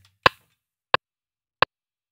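MPC software metronome clicking at 88 BPM, three short clicks about two-thirds of a second apart, the first slightly louder. It is the count-in before recording.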